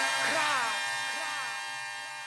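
The fading tail of a hip-hop beat after it stops: held tones ring out while a falling-pitch sound repeats as a dying echo about twice a second, the whole growing steadily quieter.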